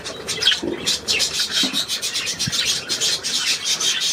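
Budgerigars chattering: a continuous, scratchy warble of quick high notes.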